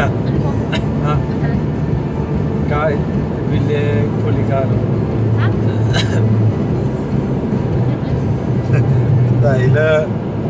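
Road and engine noise inside a moving car's cabin: a steady low drone, with a voice heard in brief snatches over it and a sharp click about six seconds in.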